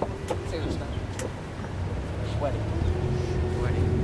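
Catamaran's diesel engine running at low revs while the boat is manoeuvred into a berth: a steady low hum with a steady tone in it, growing a little louder about two and a half seconds in.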